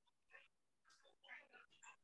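Near silence: call room tone, with a few faint, short sounds in the second half.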